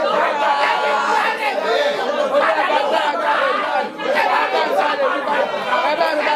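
Many voices praying aloud at once, overlapping in a continuous babble.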